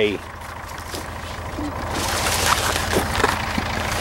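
Wind buffeting the microphone: a steady low rumble, with a hiss that grows louder about halfway through.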